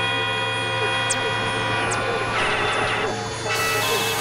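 Experimental electronic synthesizer drone music: a steady low hum under many sustained stacked tones, with a wavering tone in the middle. Two short high falling zips come about one and two seconds in, and a denser cluster of tones swells near three seconds.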